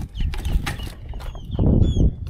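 Metal clanks and rattles from bicycles knocking against a chain-link fence as they are handed around it, mixed with a few short falling bird chirps. A louder rush of noise comes near the end.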